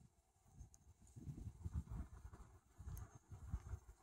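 Faint, uneven low thumps and rumble on the microphone, starting about a second in.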